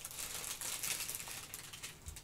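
Soft rustling and light ticks of hands handling a paper sticker sheet and picking up bundles of seam-binding ribbon from a tabletop.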